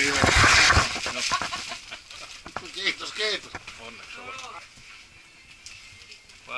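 Indistinct voices, with a loud burst of rustling and low bumps in the first second.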